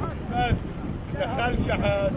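Wind buffeting the microphone in a low, steady rumble, with people's voices calling out briefly over it about half a second in and again in the second half.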